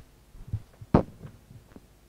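Handling noise from a live handheld microphone: a few dull low thumps and one sharper knock about a second in, the loudest.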